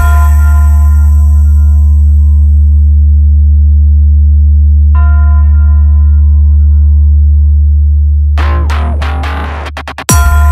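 Sound-check bass test: a loud, deep, steady electronic bass tone held throughout. A ringing, bell-like hit fades away at the start and again about halfway through, and a fast run of sweeping electronic effects comes in near the end.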